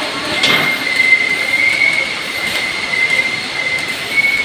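A steady high-pitched whine holding one pitch throughout, over a constant hiss.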